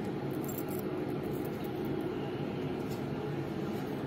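A steady low hum with a faint rushing noise, and a few light rustles or ticks over it.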